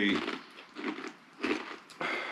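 A person chewing, with faint soft crunching and mouth noises.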